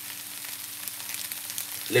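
Diced pineapple, peppers and onion sizzling steadily as they fry in a frying pan.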